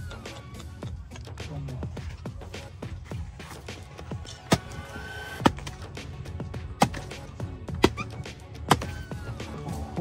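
Background music throughout, with five sharp strikes about a second apart in the second half: a hatchet chopping into a rotten log.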